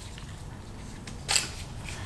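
Quiet room tone with one short, sharp plastic click about a second and a half in, from handling a clamp meter and its test leads while setting it up.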